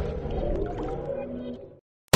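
The reverberant tail of a TV channel's electronic intro jingle, fading out and cutting to silence near the end.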